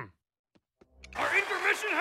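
Dead silence for about the first second at an edit between cartoon clips, then a voice starts over a steady hiss of background noise.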